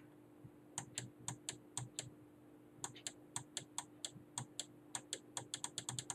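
Computer keyboard keys clicking in quiet, uneven taps while paging down through a document, coming faster toward the end. A faint steady hum runs underneath.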